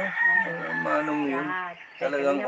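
A rooster crowing, one long crow that fades out near the end, mixed with a spoken word.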